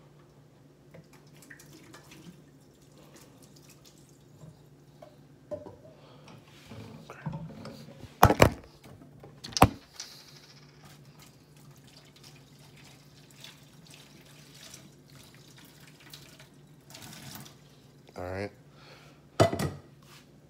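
Boiling water poured from a saucepan over empty plastic bottles in a stainless steel sink, with water splashing and two loud sharp knocks about eight and nine and a half seconds in.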